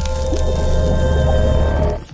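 Music of a channel logo intro sting: sustained tones over a heavy, steady bass drone, cutting off abruptly at the end.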